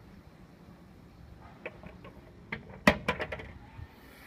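A short series of sharp clicks and knocks over a faint low hum. The loudest knock comes a little under three seconds in, with a quick cluster of smaller ones right after it.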